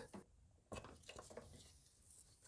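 Near silence, with a few faint, brief sounds.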